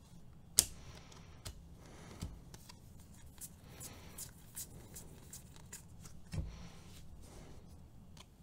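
Stack of Bowman baseball cards being flipped through by hand: the stiff, glossy cards slide and tick against one another, with one sharp click a little after the start and a soft thump about six seconds in.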